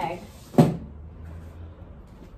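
A single sharp clunk about half a second in, from a nail-kit case being handled while it is packed away, followed by a faint low hum.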